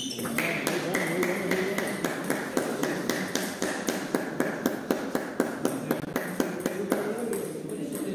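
Table tennis balls clicking sharply on tables and bats, a run of about four clicks a second through the middle, over a murmur of voices in the hall.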